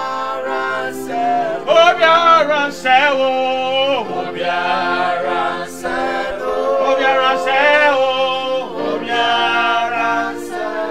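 Men singing a gospel worship song together over sustained electronic keyboard chords.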